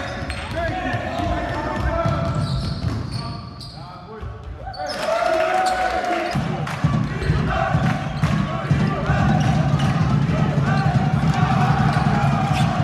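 Live basketball game sound in an echoing sports hall: a ball bouncing on the court with short knocks, and players' voices calling out. The sound dips briefly and comes back louder about five seconds in.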